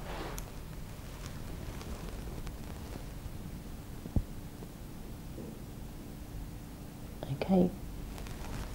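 Quiet room tone with a faint steady hum, a single sharp click about four seconds in, and a brief low murmur of a voice near the end.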